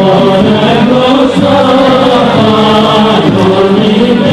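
Greek folk dance song: voices singing a traditional melody with music.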